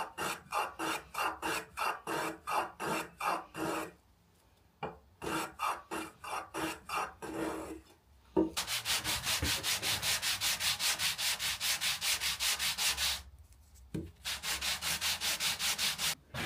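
A hand tool rubbing quick, short strokes along the edge of a beech mallet head to chamfer it. The strokes come about two or three a second, then speed up to about five a second in the middle, with a few brief pauses.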